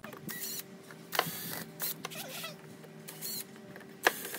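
Cordless drill run in several short bursts on the screws of a wooden cement-block mold, with sharp clicks of the bit and screws; the loudest click comes about a second in.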